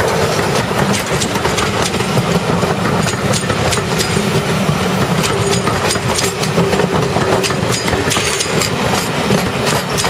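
Passenger coaches rolling past close by: a steady, loud rumble of wheels on the rails with frequent sharp clicks and clacks.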